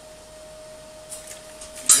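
Steady faint hum under a few light taps, then one sharp clack near the end as the steel tube frame is handled.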